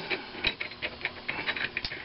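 Spark plug being screwed by hand into the cast-iron cylinder head of a McCormick-Deering Type M engine, its threads giving a quick, irregular run of small metallic clicks.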